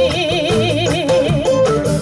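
A woman singing live, holding one long note with a wide vibrato, over strummed acoustic guitar and bass in a Latin-tinged jazz arrangement.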